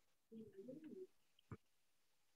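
Near silence on a video call: a faint, low, wavering sound about a third of a second in, lasting under a second, then a single soft click about a second and a half in.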